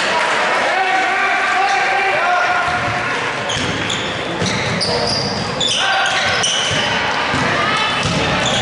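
Basketball game sounds in a large gym: a ball bouncing on the hardwood floor as it is dribbled up the court, sneakers squeaking in short high chirps, and crowd voices shouting, all echoing in the hall.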